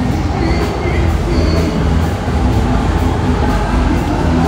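Busy night street ambience: a steady low rumble of traffic with crowd voices and music with a deep bass line from nearby bars.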